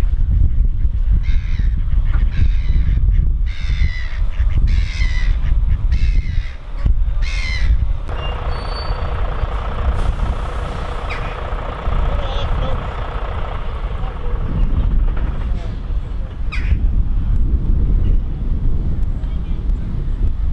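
Gulls calling repeatedly over the water, with wind rumbling on the microphone; then, after about eight seconds, a heavy lorry's diesel engine running steadily as it moves slowly.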